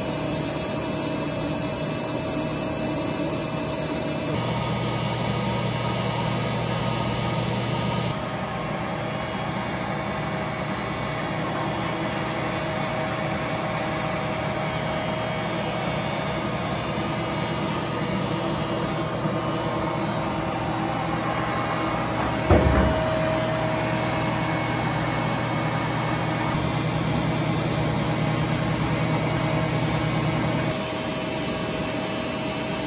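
Fortuna NAF470G splitting machine running with a steady hum as it splits thick rubber conveyor belt. A deeper, louder hum comes in for a few seconds near the start and again for the last several seconds, with a single knock about two-thirds of the way through.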